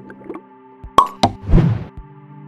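Cartoon sound effects for an animated outro over a steady background music bed: two quick pops about a second in, then a louder, short plop.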